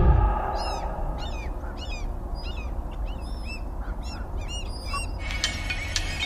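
A bird chirping in a quick series of about a dozen short, arching calls, roughly three a second, over a low steady rumble. It comes in after a deep thump at the start, and clicking beats come back in about five seconds in.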